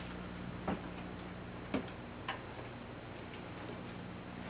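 Three short knocks or clicks, irregularly spaced within a couple of seconds, over a steady low hum.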